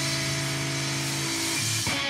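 Live rock band music: a steady held chord over a noisy wash, breaking off shortly before the end as the band changes section.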